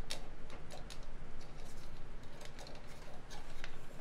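Light plastic clicks and taps as the top lid cover of a Panospace 3D printer is handled and fitted onto the printer's top.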